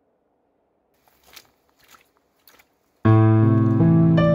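Three faint footsteps crunching on dirt, then a piano chord with a deep bass comes in suddenly and loudly about three seconds in, opening a slow pop ballad.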